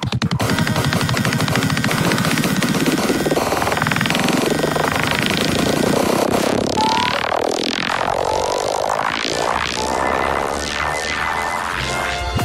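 Psytrance music in a breakdown: the steady beat drops out into a dense buzzing synth texture, and from about halfway several wide synth sweeps glide down and back up.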